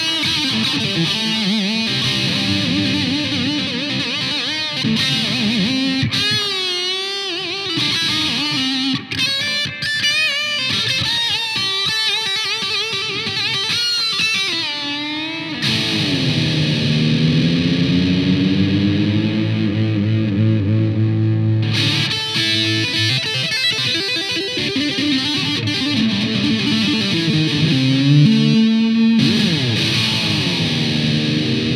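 Electric guitar on an Epiphone Les Paul fitted with a Les Trem-style tremolo, played distorted with reverb and delay: riffs and lead lines, with a wide wavering vibrato in the middle, then a long slow dip in pitch and back up a little past halfway.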